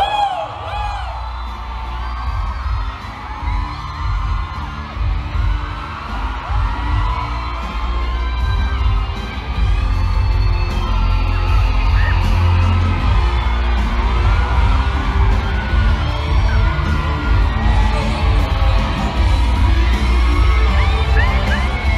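Amplified live concert music with a heavy, steady bass, and a large crowd of fans cheering and screaming over it throughout.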